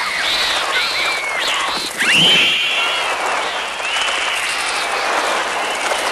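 Children screaming over a dense din of massed crows' flapping wings and shrill cries: the film's electronically produced bird sounds, made on a Mixtur-Trautonium. A burst of high screams stands out about two seconds in.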